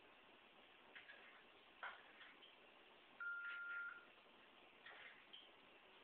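Near-silent room tone with a few soft, irregular clicks and one steady high beep lasting about a second, just past the middle.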